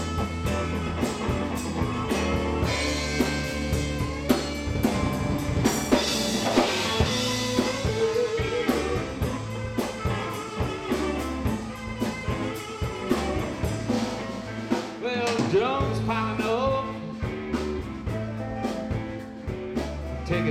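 Live blues band playing an instrumental passage: two electric guitars, electric bass, drum kit and saxophone, with a lead line of bending notes over a steady groove.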